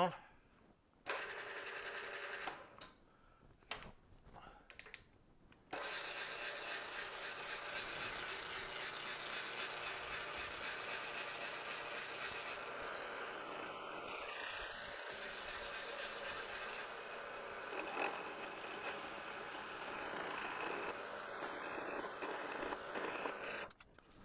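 Milling machine spindle running slowly with a seven-eighths-inch drill bit cutting a shallow countersink into a metal die. There are a few short handling sounds first, then a steady cutting noise from about six seconds in that stops just before the end.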